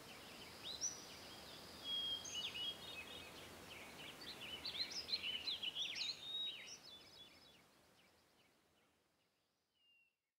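Several birds chirping and singing over a faint outdoor hiss. The calls are busiest about halfway through, then everything fades out to silence near the end.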